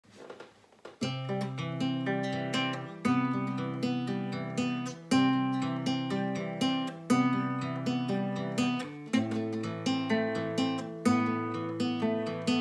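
Nylon-string classical guitar fingerpicked in a repeating arpeggio exercise, starting about a second in: a strong plucked accent every two seconds with lighter single notes between. The chord changes, with a lower bass, about nine seconds in.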